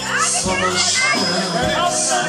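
Music with a beat, with people's voices, children's among them, calling and talking over it.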